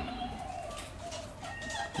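Sulphur-crested cockatoo making a faint, soft wavering call, with a brief higher note near the end.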